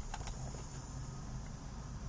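Faint steady low hum inside a car just after the ignition key is switched on, with a few faint clicks at the very start.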